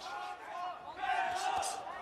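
Arena crowd noise with shouting voices, and a few dull thuds of boxing gloves landing during a punching exchange.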